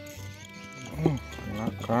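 Background music with steady held tones, with a man's voice crying out twice, about a second in and again at the end ("oh").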